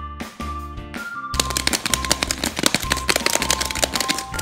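Background children's music with a steady beat. From about a second and a half in, a fast, dense rattle plays over it, from a plastic surprise egg being shaken with a toy inside.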